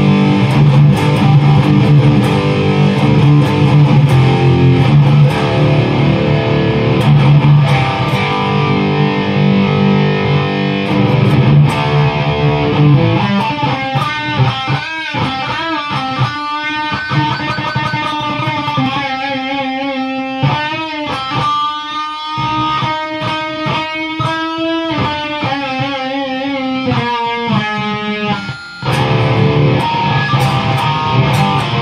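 Distorted electric guitar through a Behringer TO800 Vintage Tube Overdrive pedal into a Peavey 6505 amp. For the first dozen seconds it plays dense low chords. It then moves to single-note lead lines with long held notes that waver in pitch, broken briefly near the end.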